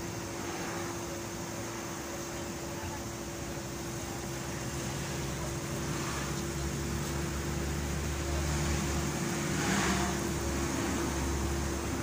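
A motor vehicle's low engine rumble that builds from about four seconds in and is loudest near ten seconds, over a steady background hum.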